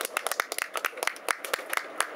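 A small group of people clapping their hands, quick irregular claps from several pairs of hands overlapping.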